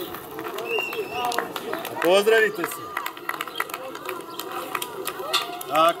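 Voices calling out across a football pitch, with a loud, drawn-out shout about two seconds in and another short burst of voice near the end.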